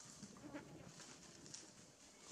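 A faint, brief bleat-like animal call about half a second in, over a steady high-pitched hiss.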